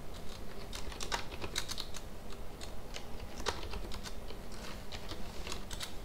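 Computer keyboard typing: soft, irregular key clicks.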